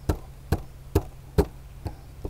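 The palm of a hand striking the wooden knob of a ramrod about five times, one sharp knock every half second or so, driving a tight-fitting patched lead ball down the barrel of an antique muzzle-loading percussion pistol onto its powder charge.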